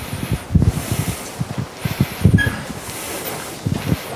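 Microphone handling noise: irregular low thumps and rustling, with a short faint squeak about two and a half seconds in.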